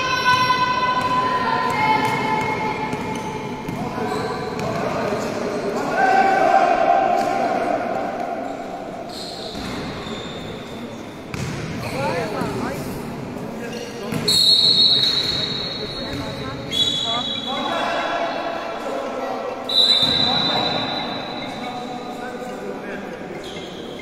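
A basketball being dribbled on a sports-hall floor during a youth game, with shouting voices and high squeaks over it, all echoing in the large hall.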